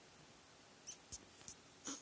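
Young rats squeaking faintly: four short, high squeaks from about a second in, the last one the loudest.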